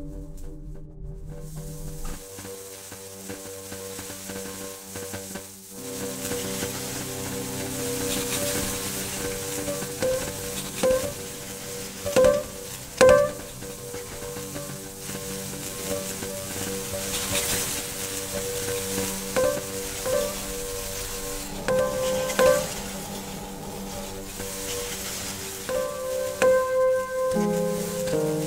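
Ambient electronic sound-design score: a sustained drone of held tones under a crackling, sizzling noise texture that fades in over the first few seconds. Short knocks that ring at one pitch punctuate it, often in pairs about a second apart; the loudest pair comes about halfway through.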